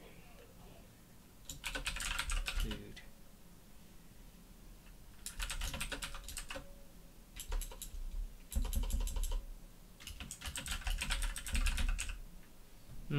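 Typing on a computer keyboard: several quick bursts of keystrokes with short pauses between them.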